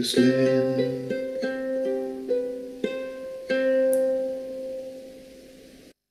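Ukulele finishing a sung hymn: a man's last sung note ends about a second in over a strum, then a few single plucked notes ring out and fade away, cutting off just before the end.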